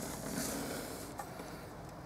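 Faint rustling of fingers on the engine wiring and the plastic plug of the fuel-rail pressure sensor, with a light tick a little past one second.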